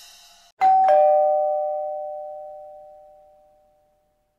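A two-note chime about half a second in, a higher tone followed by a lower one, both ringing on and dying away over about three seconds. It comes just after the last of the music fades out.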